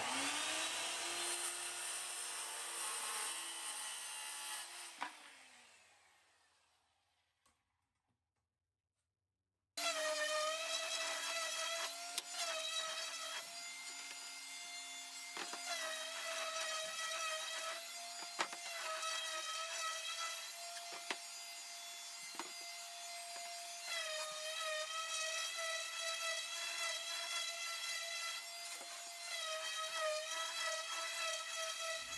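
A corded circular saw spins up with a rising whine and cuts through a plywood panel, then shuts off and winds down about five seconds in. After a few seconds of silence, a random orbital sander runs steadily on plywood, its pitch shifting slightly as it is pressed and moved, with a few light knocks.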